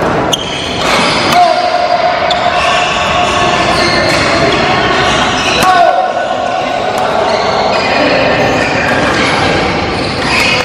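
Flypower Cakra badminton racket, strung at 29 lb, striking a shuttlecock in a rally: a few sharp hits that echo in a large hall, over the steady sound of voices.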